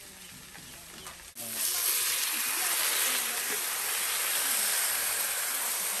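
Fish and vegetables sizzling in a hot wok. Faint for the first second, then loud and steady from about a second in.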